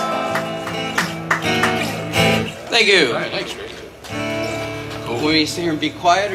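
Two acoustic guitars strumming and picking loosely, with people's voices talking over them.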